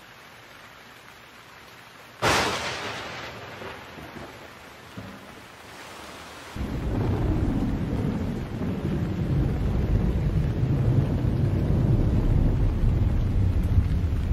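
A sharp thunderclap about two seconds in, fading away over the next couple of seconds. From about six and a half seconds, a loud, steady, deep rumble of a thunderstorm with rain sets in.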